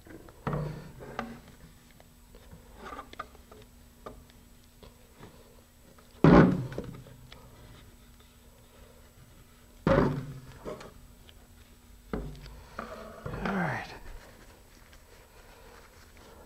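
Fiberglass model rocket knocked against and set down on a tabletop as it is handled: two loud thunks about three and a half seconds apart, with smaller knocks and handling noise between.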